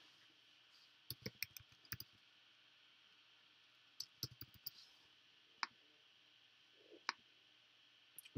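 Faint computer keyboard taps and mouse clicks: a quick run of keystrokes about a second in, another short run around four seconds, then two single clicks later on.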